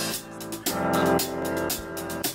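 Upbeat electronic pop music: synth chords over a drum-machine beat, with no vocals yet.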